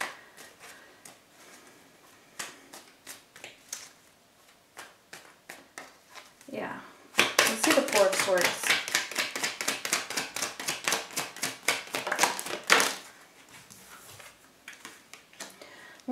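A deck of tarot cards being shuffled by hand: faint, scattered card clicks at first, then from about seven seconds a louder run of rapid flicking lasting about six seconds, then quieter again.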